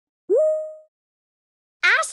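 A short cartoon 'bloop' sound effect from a children's story app: one pitched tone that slides quickly upward, holds briefly, then fades out within about half a second.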